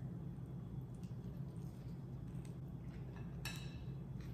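Quiet chewing of soft tacos, with faint wet mouth clicks and one sharper smack about three and a half seconds in, over a low steady hum.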